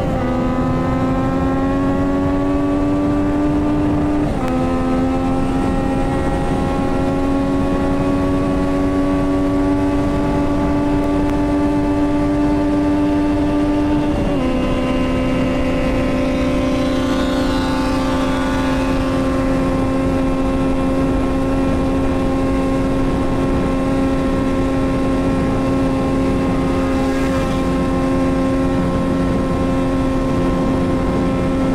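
Yamaha MT-09's three-cylinder engine with a full aftermarket exhaust and a remap, pulling at full throttle with its pitch climbing slowly. Two upshifts, about four seconds in and again about fourteen seconds in, each drop the pitch; after the second it holds nearly steady near top speed. Heavy wind rush on the microphone underneath.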